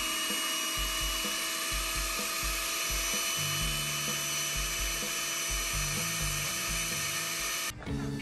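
Snow Peak × Makita cordless field blower running on suction, drawing the air out of an inflatable sleeping mat: a steady high whine over rushing air, cutting off suddenly near the end.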